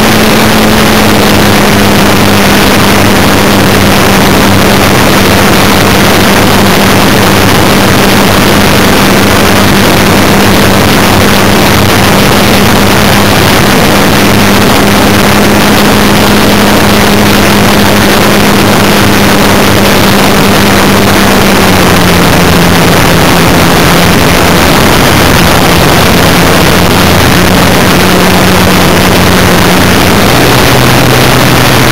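Radio-controlled model plane's motor and propeller droning steadily, heard from a camera on board in flight, under a loud rush of wind noise. The pitch drops slightly about two-thirds of the way through as the motor eases off.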